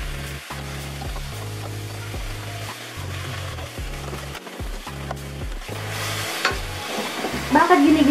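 Pieces of freshly washed pork sizzling as they fry in hot oil in a stainless steel pot, stirred with a spatula that scrapes the pot now and then. The pork is being seared in the oil until it browns, the first step of a pork sinigang.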